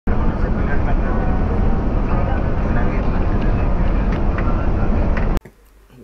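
Loud engine and road rumble inside a bus cab cruising along a highway, cutting off abruptly near the end.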